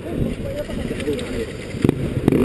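Dirt bike engine idling steadily under faint, muffled voices, with a single sharp knock near the end.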